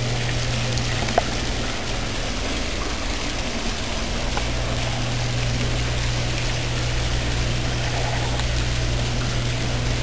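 Small fountain jets splashing steadily into a shallow water-filled basin, an even rush of falling water, with a steady low hum underneath.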